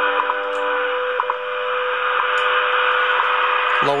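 Shortwave time-signal station WWV received in AM around 5 MHz on an RTL-SDR receiver. A steady audio tone is broken by a short, higher tick once a second, all over heavy static hiss.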